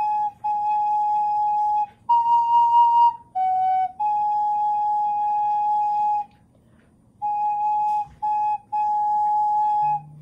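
Recorder playing a slow phrase of single held notes, mostly one repeated note with a step up and a step down, with a pause of about a second in the middle.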